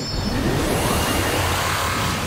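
Whoosh transition sound effect: a loud, steady rush of noise with a pitch sweeping upward through it.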